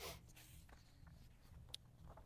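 Faint rustle of paper sheets being handled and a page turned at a lectern, with one small sharp tick near the end, over low room tone.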